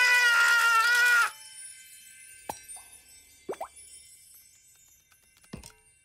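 A cartoon character's long held shout that cuts off about a second in, followed by three short, separate cartoon drip plops in the quiet, one of them rising in pitch.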